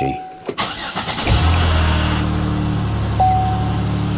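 2009 Chevy Impala engine being started: a short crank about a second in, then the engine catches and settles into a steady idle. A single dashboard warning chime sounds near the end.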